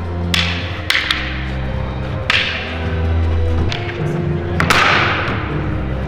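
Wooden staffs clacking together in a sparring routine, about six sharp hits at uneven intervals, each ringing on briefly, over background music with a steady bass.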